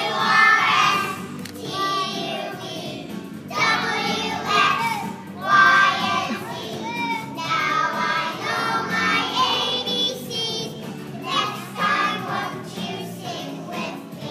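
A group of three-year-old children singing a song together, in phrases with short breaks between them.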